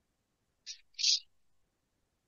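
Two short swishes of a duster wiped across a chalkboard, the second louder.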